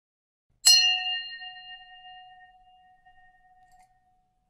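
Subscribe-bell sound effect: a single bell-like ding, struck once well under a second in, ringing with a few clear tones and fading away over about three seconds.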